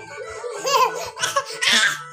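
Toddler laughing in short bursts, rising to a high squealing laugh near the end, over background music.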